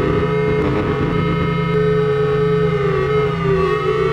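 Electronic music from an Atari 800XL home computer: a held note that dips slightly in pitch near the end, over a steady, buzzing low drone.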